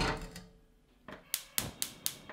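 A saucepan set down on a gas hob's grate with a clunk, then about a second later a run of four sharp clicks, about four a second: the hob's igniter sparking to light the burner.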